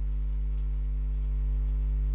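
Steady low electrical hum with fainter higher overtones, unchanging throughout: mains hum picked up by the recording.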